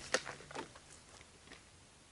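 A few faint clicks and rustles from a rifle being handled and settled into the shoulder, the sharpest just after the start, otherwise quiet.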